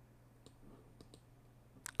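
A few faint clicks of a computer mouse, about half a second and a second in, over a low steady hum in a quiet room.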